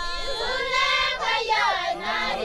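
Maasai women singing together without instruments, many high voices overlapping in a traditional song.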